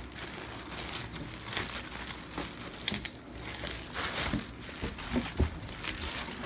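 Thin clear plastic bag crinkling and rustling as a folded micromink fleece blanket is pulled out of it, with one brief, louder crackle about halfway through.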